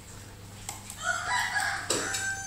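A rooster crowing, beginning about a second in.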